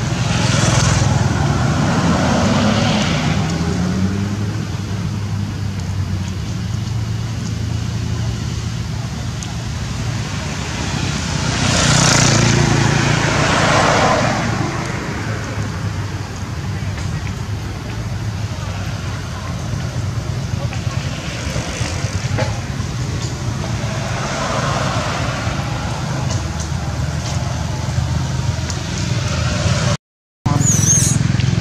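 Road traffic passing, with vehicles swelling and fading several times over a steady low hum; the loudest pass comes about twelve seconds in. Voices talk in the background.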